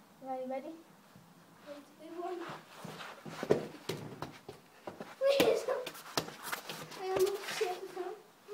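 Children's short exclamations and shouts during a sitting-down football game, with several sharp knocks of a football being kicked, the loudest about three and a half seconds in.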